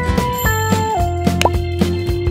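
Children's background music with a steady beat and a held melody note that steps down in pitch. About one and a half seconds in there is a short pop sound effect.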